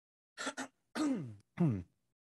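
A man clearing his throat: a short sound, then two voiced sounds that fall in pitch.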